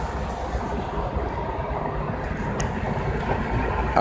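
Car road noise heard from inside the cabin as it climbs a mountain road: a steady rumble of engine, tyres and wind.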